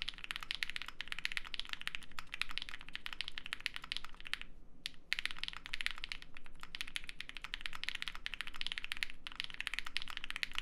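Fast typing on an Extreme75 prototype mechanical keyboard fitted with KTT Strawberry linear switches and GMK Black Lotus keycaps: a dense run of key clacks, with a short pause a little over four seconds in.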